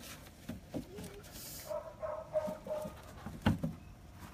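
A dog whining: a short rising whine about a second in, then a longer broken whine of several high notes. A couple of knocks follow near the end.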